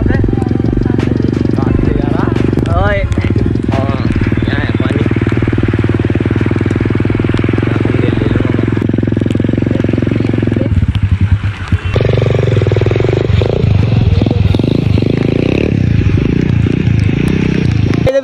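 A 125cc dirt bike's small single-cylinder engine running steadily as it is ridden through rainwater and mud, with a brief dip about eleven seconds in.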